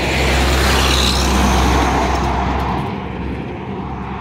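A loud truck passing close by: a deep rumble and rushing road noise that swell over the first second and fade away about three seconds in.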